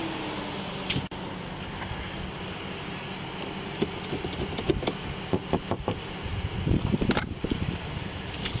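Chevrolet Silverado pickup running at a steady idle. Its power window whirs briefly as it closes at the start, then there are a few clicks from the outer door handle being pulled, and a burst of rustling near the end.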